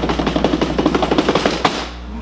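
A rapid drum roll: a fast, even run of strikes that stops abruptly near the end.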